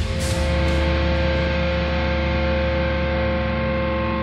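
Live heavy metal: after a last couple of drum hits, the band holds one low, distorted guitar chord that rings on steadily at full volume.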